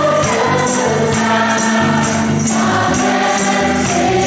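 Live church worship band: several men singing a gospel song together over an electric bass line and guitars, with jingling percussion keeping the beat.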